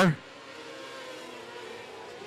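Engines of a pack of small open-wheel dirt-track racecars running on the track, a faint steady drone heard from the stands.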